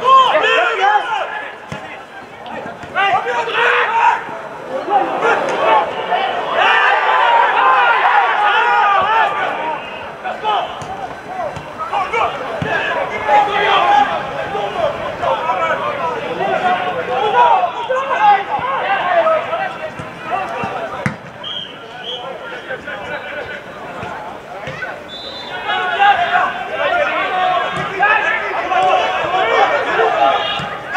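Shouting and calling voices on and around a football pitch during live play, with now and then the thud of the ball being kicked.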